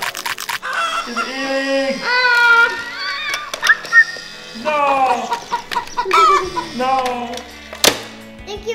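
Background music under wordless vocal sounds: playful squeals and cries that glide up and down in pitch. A quick burst of clicks comes right at the start.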